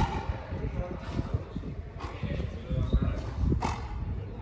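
Frontenis ball play: sharp knocks of the rubber ball off rackets and the fronton wall, roughly a second apart, the loudest about three and a half seconds in, over a low rumble and voices.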